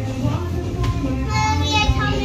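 Background music throughout, with a young girl's high-pitched, drawn-out cry starting about a second and a half in.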